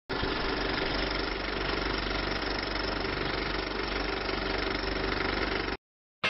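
A steady machine-like running noise with a low hum and a steady mid-pitched tone, cutting off suddenly shortly before the end.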